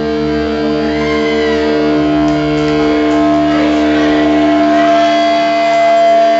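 Live rock band with the electric guitar holding a long sustained chord, its notes ringing on steadily without a drum beat.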